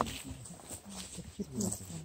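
Quiet background voices of a group of people talking among themselves.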